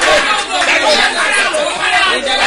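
Speech: a man praying aloud in a loud voice.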